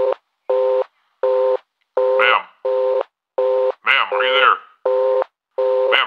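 Telephone busy tone on the line: about nine short, even beeps, roughly 1.4 a second, the sign that the call has been cut off. A voice speaks briefly over it twice, about two and four seconds in.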